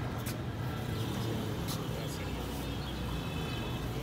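Steady low outdoor rumble with a few faint clicks over it.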